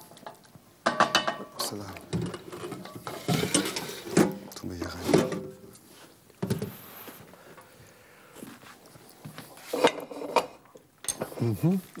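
Metal kitchen utensils clinking and scraping against a cooking pot and plates in scattered separate knocks, some ringing briefly, as food is dished up.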